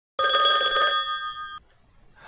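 A telephone bell ringing once: a rapid metallic trill of several steady tones that then rings on and cuts off abruptly, before the call is answered.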